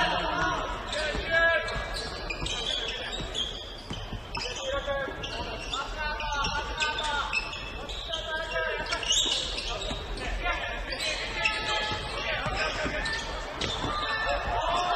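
A basketball being dribbled on a hardwood court during play, amid players' and spectators' voices and calls in a large gym.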